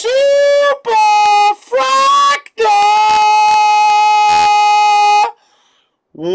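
Loud, high-pitched sung cry of celebration in four notes: three short ones, then a long steady note held for nearly three seconds that cuts off suddenly.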